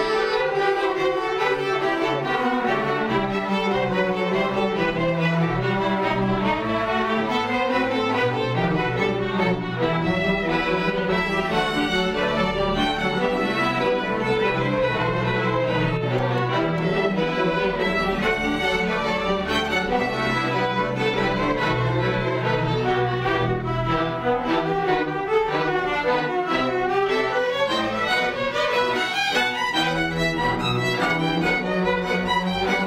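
A student string orchestra of violins, violas, cellos and double basses playing a piece together, continuous and at an even level.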